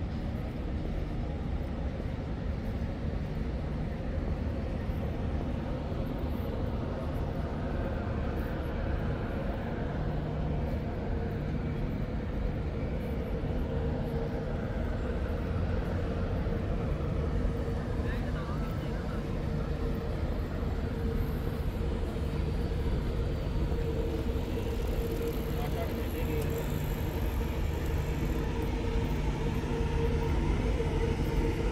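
Steady city ambience: the low rumble of road traffic running without a break, with a constant low hum over it.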